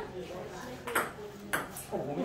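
Table tennis ball clicking on the bat and table: two sharp ticks a little over half a second apart, with faint voices behind.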